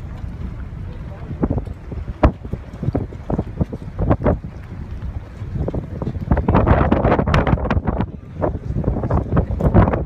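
Wind buffeting the microphone over the low, steady rumble of a boat's engine, with sharp crackles that grow denser and louder from about six seconds in.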